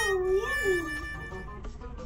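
A short high-pitched call, like a toddler's "oh" or a meow, that dips and rises in pitch during the first second, over background music.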